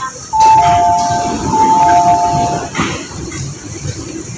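Hong Kong MTR door chime, a two-note signal with a higher tone joined by a lower one, sounded twice as the train and platform screen doors open. A short rush of noise follows near the end.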